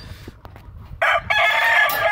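A gamecock rooster crowing once: a loud, long, steady-pitched crow that starts about a second in and is still going at the end.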